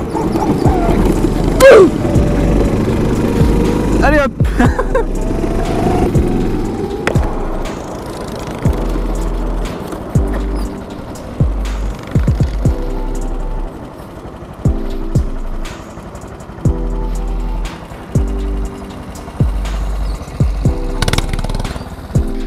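Background music: a track with vocals over a beat in the first seconds, then repeated chord stabs over a bass pulse from about eight seconds in.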